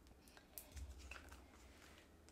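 Near silence, with a few faint ticks and rustles of paper as adhesive foam dimensionals are peeled from their backing strip and handled, over a low steady hum.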